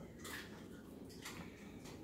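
Faint clicks and scrapes of a metal spoon scooping soft bread pudding out of a glass bowl into a small cup, a few light taps spread across the moment.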